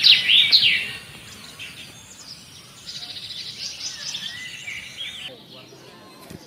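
Birds chirping and calling: loud sweeping chirps in the first second, then fainter scattered chirps.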